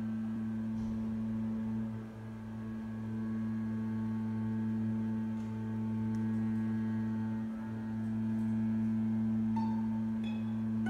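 Violin and double bass bowing long held notes together, a steady low sustained chord that dips briefly about two seconds in and again near eight seconds.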